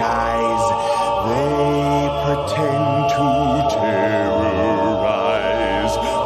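Slowed-down a cappella vocal arrangement: several voices hold sustained chords, some with a slow vibrato, over a deep held bass note, with no clear words.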